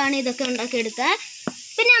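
A person speaking in narration over a steady background hiss, with a pause in the speech broken by a single short click.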